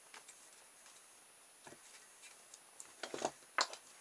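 Faint handling noises from a cardboard tube covered in sticky-backed holographic paper: scattered light crinkles and taps, with a sharper tap near the end.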